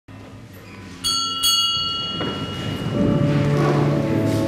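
A small bell struck twice in quick succession, its high tones ringing on for about a second, over soft low background music. From about three seconds in, held chords of music swell up and grow louder.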